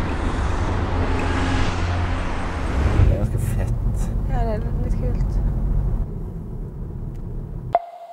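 Steady low rumble of a car driving, heard inside the cabin, with a brief voice sound about halfway through. Just before the end the rumble cuts off and a single chime note starts.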